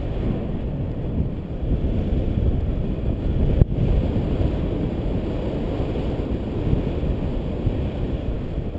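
Airflow buffeting the camera's microphone during a tandem paraglider flight: a steady low rumble. There is one sharp click about three and a half seconds in.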